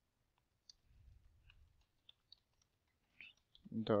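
Computer keyboard typing: scattered, faint, irregular keystroke clicks. A spoken word comes in near the end.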